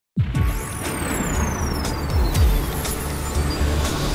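Channel-intro music with sound-design sweeps: deep rumbles that drop in pitch and a high tone gliding slowly downward, starting abruptly.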